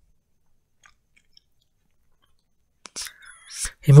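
Near silence for almost three seconds, then a click and close-up mouth noises with a breath from the narrator, just before his voice resumes at the very end.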